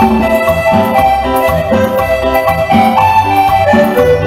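A live band playing an instrumental passage: congas played by hand in a steady rhythm under a bright melody of short stepping notes and a bass line.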